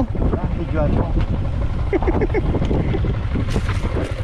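Yamaha Sniper's single-cylinder four-stroke engine running under load as the motorcycle climbs a dirt hill trail, its firing pulses steady and even. Wind buffets the helmet microphone.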